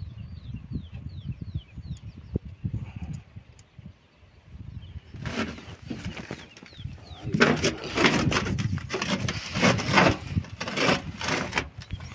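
Small birds chirping in quick, falling notes over a low rumble, then about five seconds in a loud run of irregular rustling and knocking takes over.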